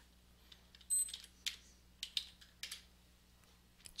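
Computer keyboard keys tapped a handful of times, faint and unevenly spaced, as a dimension is typed into the drawing program.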